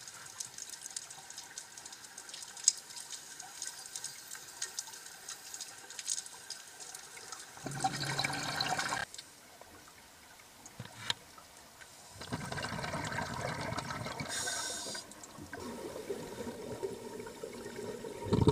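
Scuba regulator exhaust heard underwater: loud rushing, bubbling bursts as a diver breathes out, about eight seconds in and again from about twelve seconds, over a faint crackle of small clicks.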